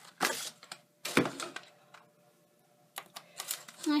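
A few light clicks and taps of hands handling papercraft tools and pieces on a desk, with one sharper knock about a second in and a short cluster of clicks near the end.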